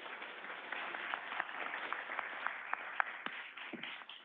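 Audience applauding: a dense patter of many hands clapping that dies away near the end. It sounds thin, as heard over a video-call feed.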